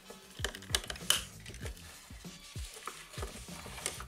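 Hard plastic toy parts clicking and knocking as a Dino Megazord action figure is handled and its pterodactyl piece is clipped onto the back, a series of short irregular clicks.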